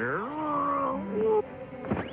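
Cartoon cats yowling, a run of rising and falling wailing cries over background music, with a short sharp hit near the end.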